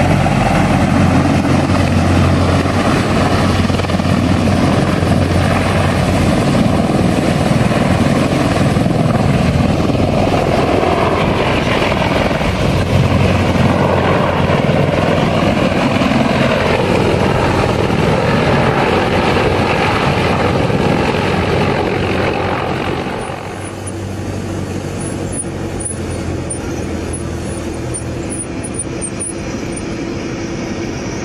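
Marine CH-53E Super Stallion heavy-lift helicopter running loud as it hovers low and sets down, its rotor beat and turbine noise mixed with the rush of its rotor wash. About 23 s in the sound drops abruptly to a quieter steady drone.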